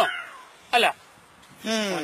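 A man's voice in short non-word vocal sounds: a brief falling-pitched sound at the start, a quick syllable just under a second in, and a longer drawn-out sound sliding down in pitch near the end.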